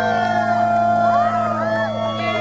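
Live rock band letting a held chord ring on electric guitar and bass, with high wails sliding up and down over it and no drums.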